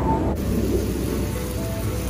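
Steak sizzling on a hot lava-stone plate, a steady hiss, with background music underneath.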